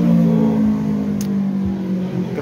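A vehicle engine running steadily with a low hum, its pitch dropping slightly, fading out near the end.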